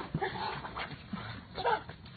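A Doberman and a smaller dog playing tug-of-war over a toy, giving short, uneven vocal sounds, with a louder one near the end.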